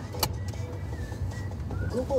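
A car driving, its engine and road rumble heard from inside the cabin as a steady low drone, with one sharp click shortly after the start.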